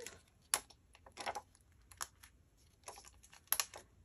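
Scattered light clicks and crinkles of a clear plastic sheet of adhesive enamel dots being handled while a dot is picked off it with the fingers, about five short sounds with quiet gaps between.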